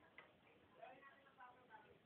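Very quiet: faint, distant voices talking, with one sharp click shortly after the start.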